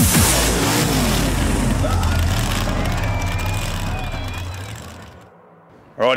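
Supercharged burnout car's engine running hard with a dense rumble of tyre noise, fading out gradually over about five seconds.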